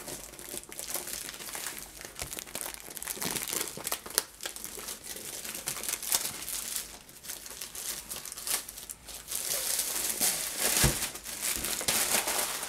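Clear plastic sleeve around a rolled diamond-painting canvas crinkling and crackling as it is handled and worked off the roll, louder in the last few seconds, with a single knock about eleven seconds in.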